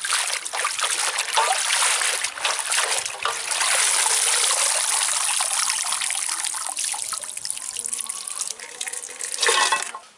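Water sloshing and splashing in a metal basin as handfuls of stem amaranth greens are swished through it by hand and lifted out, the water streaming and dripping back off the leaves, with a louder splash near the end.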